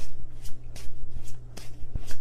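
Deck of tarot cards being shuffled by hand: a quick, irregular run of short papery card strokes, about three a second.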